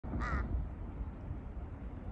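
A low, steady rumble with a brief high-pitched call about a quarter of a second in.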